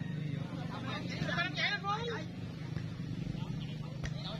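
A steady low engine hum runs throughout, with voices shouting briefly about one to two seconds in.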